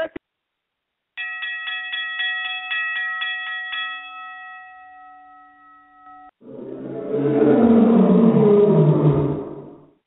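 A bell-like chime struck rapidly about four times a second for about three seconds, then ringing on and fading, marking the end of a speaking turn. It is followed, about six seconds in, by a loud animal-like roar sound effect lasting about three and a half seconds, which swells and then dies away.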